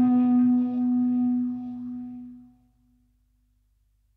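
Electric and acoustic guitars letting the song's last chord ring out, one held note the strongest, fading away about two and a half seconds in.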